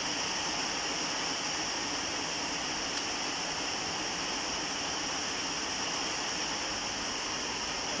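Heavy rain falling steadily, an even hiss with no breaks.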